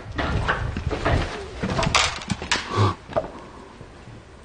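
Dry grass and weeds rustling and crackling as someone pushes through them on foot, in quick irregular snaps that thin out near the end.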